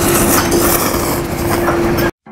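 A train running on the elevated rail line overhead: a steady hum with a heavy rumble and rattle of wheels on track.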